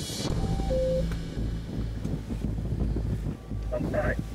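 Speedboat engine running at speed, a steady low rumble mixed with wind on the microphone and rushing water. A few short steady tones sound in the first second.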